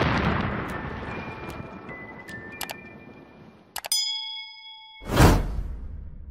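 Edited-in outro sound effects: an explosion-style boom with a long rumbling decay, with a few faint music notes over it. About four seconds in comes a sharp click and a bright ringing ding that lasts about a second, then a second, louder whoosh-and-boom near the end.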